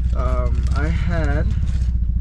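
Mazda Miata's four-cylinder engine idling, heard from inside the cabin as a steady low drone with a fast even pulse. It is a morning cold idle, when the owner says the engine shakes a lot until it warms up.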